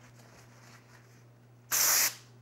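Aerosol can of brake cleaner giving one short hissing spray near the end, used to clean debris out of the cylinder bores.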